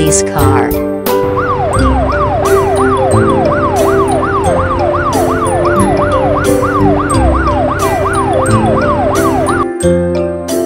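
Police car siren sound effect sweeping up and down in pitch, about two sweeps a second, over background music with a steady beat; the siren starts about a second in and stops just before the end.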